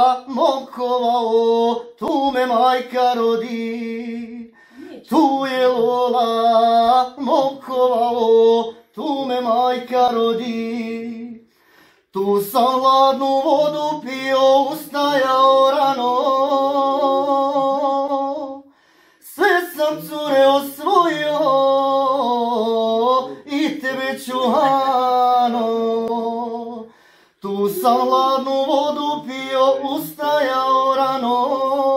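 A man singing unaccompanied: a slow song of long held notes that waver, sung in phrases of several seconds with short pauses for breath between them.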